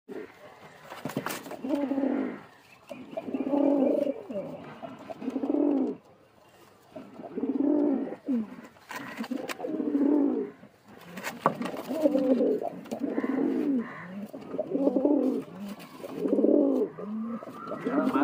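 Domestic pigeons cooing in a loft: low, throaty coo phrases about a second long that repeat again and again with short pauses between them.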